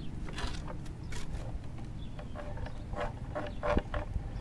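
Wooden sawhorse roping dummy being lifted and tipped: scattered knocks and short creaks of the wood, over a steady low rumble of wind on the microphone.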